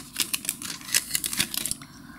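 Self-sealing plastic parts bag crinkling as a clear plastic sprue is pulled free of it and handled, a fast irregular crackle that dies away just before the end.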